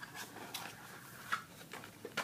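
Faint handling noise of small items being moved about: a few light clicks and rustles, the sharpest a little past halfway.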